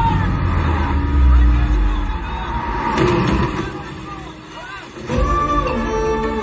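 Movie soundtrack: a motorbike engine rumbling under background music, with other film sound mixed in. The sound drops away briefly about four seconds in, and then the music comes back fuller near the end.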